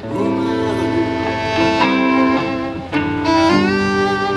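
Violin playing a slow line of long, held notes over guitar accompaniment, in an instrumental break of a live soul song.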